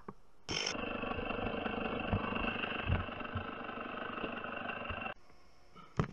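Gas chainsaw running at a steady, even speed, starting abruptly about half a second in and cutting off suddenly just after five seconds, with a few low knocks along the way.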